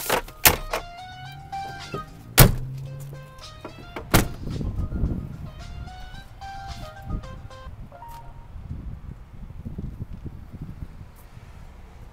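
Pickup truck door handled and shut: several sharp knocks in the first four seconds, the loudest about two and a half seconds in, followed by low rumbling handling noise. Music plays in the background through the first part.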